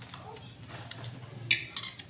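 Fingers handling food on a brown paper wrapper, the paper crinkling sharply twice in quick succession about a second and a half in.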